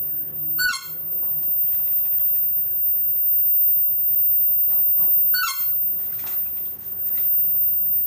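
A bird calls twice, about five seconds apart. Each call is a short, sharp note that slides downward, heard over steady garden background noise.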